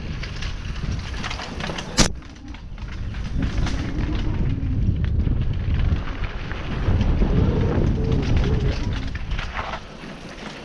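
Full-suspension downhill mountain bike rolling fast over a rocky dirt and gravel trail, heard from a helmet camera: heavy wind rumble on the microphone with tyre crunch and bike rattle, and one sharp loud knock about two seconds in.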